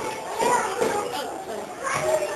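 Young children's voices chattering and calling out over one another, with no clear words.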